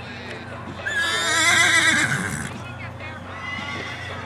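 A pony whinnying once: a loud, quavering call about a second and a half long, starting about a second in and dropping in pitch at the end.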